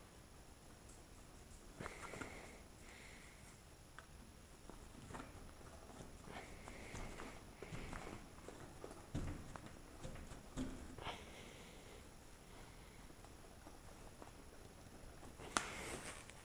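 Faint rustling and creaking of a stiff canvas side panel with a clear plastic window being handled and fitted onto a tractor cab frame, with scattered small clicks and knocks and a sharper click near the end.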